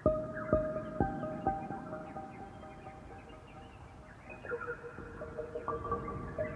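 Calm ambient instrumental music, a piece opening with soft plucked notes that ring on over held tones, about two notes a second at first, thinning out, then picking up again near the end.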